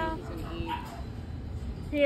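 A small terrier-mix dog making short whining cries that glide up and down, with a louder, brief yip at the very end.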